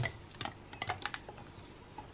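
Ice cubes clicking against a plastic cup and each other as the milk tea is stirred with a wide boba straw: a quick, irregular run of clicks that thins out and stops about a second and a half in.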